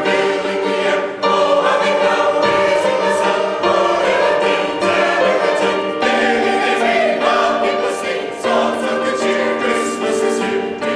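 Mixed church choir of men's and women's voices singing sustained phrases together, with piano accompaniment.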